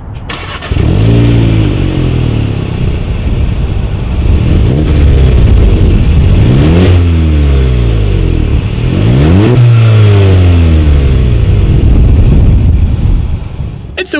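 The 2019 Volkswagen Golf GTI's turbocharged 2.0-litre four-cylinder, heard at its dual exhaust tips, fires up and then is revved several times while the car stands still. Each rev rises and drops back to idle, with two quick, sharp blips near the middle.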